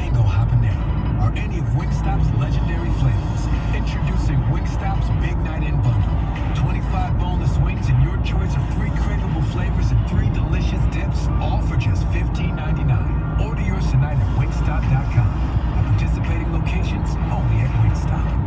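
Steady engine and road noise inside a vehicle's cab at highway speed, with a radio playing underneath.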